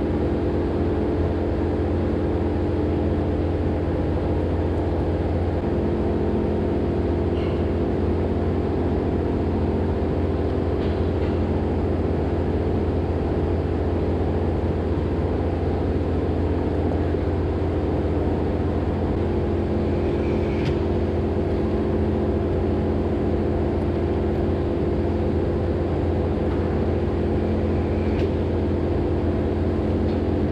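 A large electric cooling fan running with a steady hum and drone, with a few faint clicks from the milking equipment.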